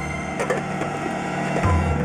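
Dramatic background music score: held tones over a low bass that falls away and comes back near the end, with a few drum strikes.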